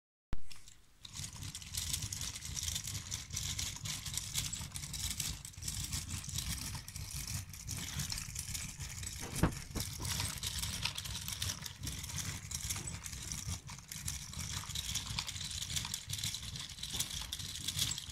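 Plastic Lego Technic linkages and gears of a galloping-horse model clattering as its legs cycle: a steady stream of small clicks, with one sharper knock about halfway through.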